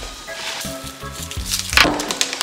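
Background music with the dry rustle of muesli poured from a carton into a bowl. A short, louder rustle comes near the end.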